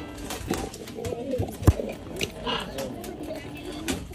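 A macaw making soft, low warbling and mumbling sounds that waver up and down in pitch, with scattered clicks and one sharp knock a little under two seconds in.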